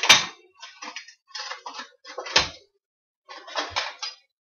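Metal kitchen utensils clinking and clattering as they are rummaged through in a utensil holder, with sharper knocks just after the start and about two and a half seconds in.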